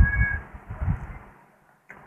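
A person slurping noodles, loud and uneven sucking that dies away about a second and a half in.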